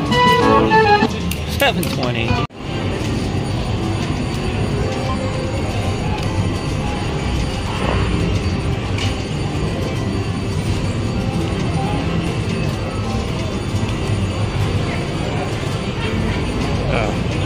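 A slot machine's win-payout jingle, bright chiming tones, for about the first two and a half seconds. It cuts off suddenly, and steady casino-floor hubbub follows: a mix of gaming machine sounds and distant voices.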